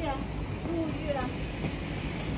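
Steady bubbling of aeration hoses churning the water in fish tanks, with a low hum under it and faint voices in the background.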